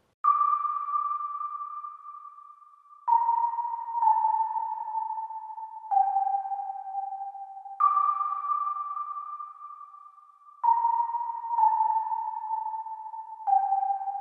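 Omnisphere 'Whistlers Bells' software-synth bell preset playing a slow counter melody, each pure bell-like note ringing and fading. It is a four-note falling phrase played twice.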